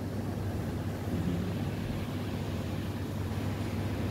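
Steady low hum with an even hiss from the shop's refrigerated display counter and air conditioning: indoor room tone.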